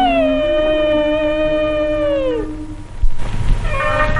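Cantonese opera singing from a 1936 gramophone record: a high voice holds one long note over a steady instrumental line, then glides down and stops about two and a half seconds in. About three seconds in, percussion strikes come in as the band's accompaniment picks up again.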